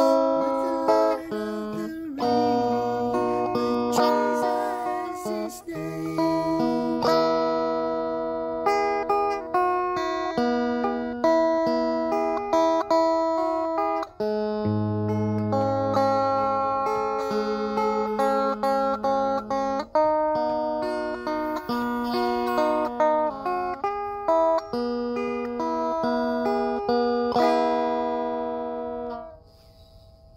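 Guitar music: chords and held notes played as a song passage, stopping just before the end.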